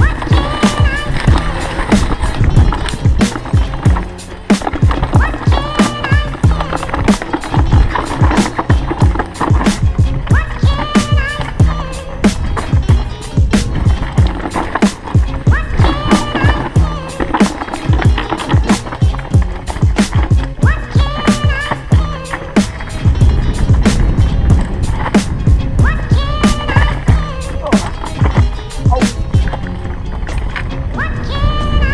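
Norco Aurum downhill mountain bike running fast over a rough dirt trail: tyre roar with irregular knocks and rattles of the bike over bumps, roots and rocks. A song with a steady beat plays over it.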